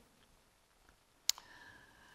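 A single sharp click about a second into an otherwise near-silent pause in a small room.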